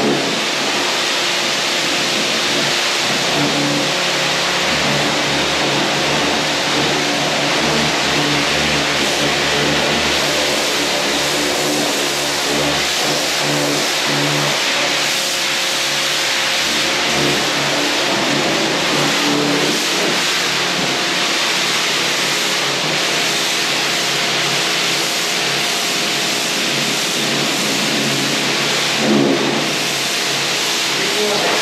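Stihl pressure washer running steadily, its motor humming under the hiss of the high-pressure water jet hitting concrete walls and a slatted floor.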